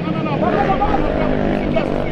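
Men's voices talking over one another in an argument, with a vehicle engine humming beneath them in street traffic.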